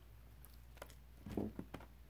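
Faint handling noise from hands working a crocheted toy and its yarn tail: a few soft clicks and rustles, with a slightly louder short rustle a little past halfway.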